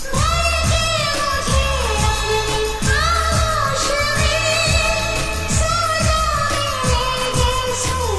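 1990s Bollywood romantic film song: long held sung notes that slide between pitches, over a steady drum beat.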